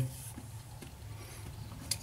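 Quiet room tone with faint rustling, and one short click near the end.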